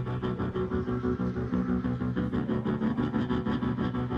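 Live rock band playing an instrumental passage: a fast, evenly pulsing bass line under held low keyboard chords.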